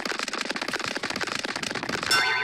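A dense run of rapid, irregular crackling clicks, many a second.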